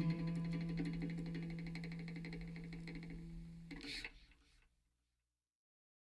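The last guitar chord of a blues-rock song rings out and fades away, with a brief final flourish about four seconds in. Then there is silence between album tracks.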